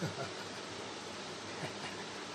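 A steady, even hiss of noise with no clear events in it.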